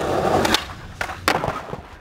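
Skateboard wheels rolling on concrete, then several sharp clacks and slaps about half a second and a second in as the board and skater hit the pavement in a bail down a stair set.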